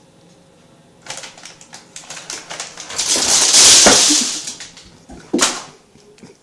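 A crinkly plastic cat-treat packet (Dreamies) rustling and crackling as a cat claws and drags it. It starts as scattered crackles about a second in and grows to a loud crinkle in the middle, with one more sharp crackle near the end.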